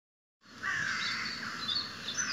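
Several birds chirping and calling at once, in overlapping short calls that start about half a second in.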